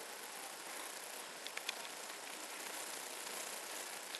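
Steady outdoor background hiss with a few faint clicks about one and a half seconds in.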